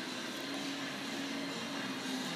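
Steady workshop background noise: an even hiss with a faint low hum.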